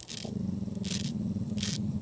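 A cicada buzzing on the ground: a steady low buzz with four sharp hissing bursts about three-quarters of a second apart.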